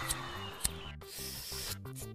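Quiet cartoon background music, with a single sharp click about two-thirds of a second in and a soft hiss in the second half: sound effects of a lighter and a drag on a joint.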